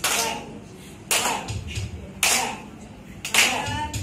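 A group clapping together in time: four claps about a second apart, with faint voices between them.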